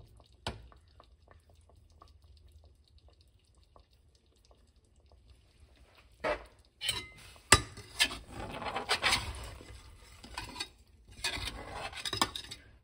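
Chicken in yogurt gravy simmering in an open pressure cooker, with faint small crackles. About six seconds in, a metal spatula starts stirring, with loud irregular scraping and clanking against the cooker's metal sides.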